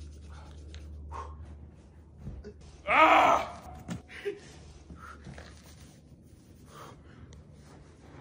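A man cries out loudly once, about three seconds in, as he lies in deep snow fresh from a hot sauna: a gasp of shock at the cold. Fainter gasps and breaths follow.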